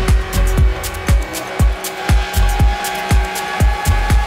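Deep tech house music from a DJ mix: a steady four-on-the-floor kick drum at about two beats a second with hi-hats between the kicks. A held synth tone comes in about halfway through.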